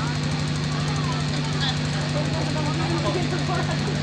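A steady low hum from the stage sound system's live microphone and loudspeakers, with faint crowd chatter underneath.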